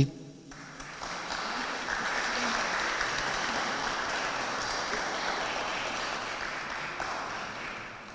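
Audience applauding, starting about half a second in, building and holding steady, then fading out near the end.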